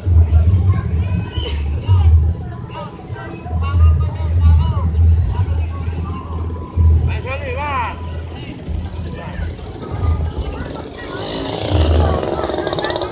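Spectators' voices along a street with irregular low rumbling bursts, and a brief wavering high-pitched call about seven seconds in.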